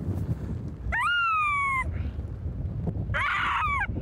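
Two high-pitched animal cries over wind noise. The first, about a second in, jumps up and then slides slowly down in pitch. The second, near the end, is rougher and also falls.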